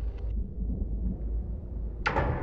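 A low, steady rumbling drone from the soundtrack's sound design, with a few faint ticks at the very start.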